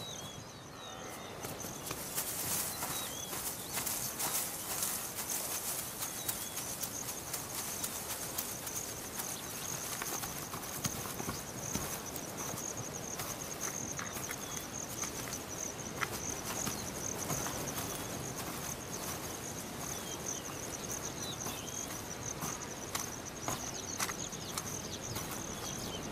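Steady high-pitched insect chorus that comes in about a second and a half in, with a patter of footfalls and rustling from a male ostrich shaking its fluffed-up wing feathers.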